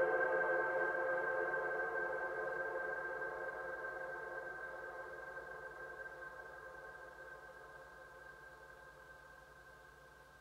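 Ambient drone from a Moog Subharmonicon synthesizer, its notes set by plant biodata from a Pilea peperomioides through an Instruo Scion. A held chord of several steady tones, with one high tone standing out, fades evenly away to almost nothing.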